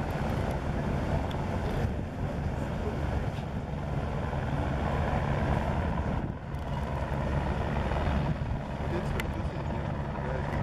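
A boat's engine runs with a steady low drone, mixed with wind and water noise.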